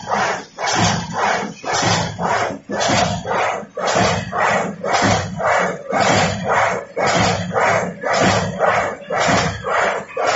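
Huanlong LJ-2DXG paper straw making machine running at a stable 45 metres a minute. Its working cycle repeats as an even rhythm of about two and a half pulses a second.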